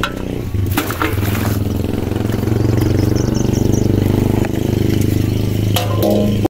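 An engine running, growing louder over the first couple of seconds and then holding steady, with a few short knocks near the start and near the end.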